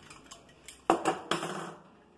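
Metal parts and tools being handled on a stainless-steel Cornelius keg: faint small clicks, then two sharp metallic clinks about a second in, with a short rattle that fades.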